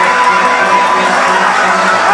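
Live ringside fight music: a high wind note held steady over a steady low drone, with the crowd underneath.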